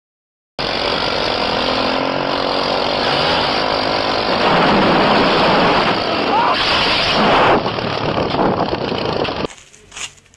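Loud commotion of men shouting over a running engine, cutting in suddenly about half a second in and dropping away shortly before the end.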